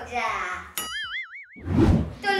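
A cartoon 'boing' sound effect: a click, then a springy tone that wobbles up and down for under a second, followed near the end by a low rushing whoosh.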